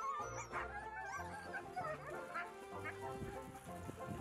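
A team of harnessed sled-dog huskies giving many short, high-pitched cries, excited and eager to run, over background music.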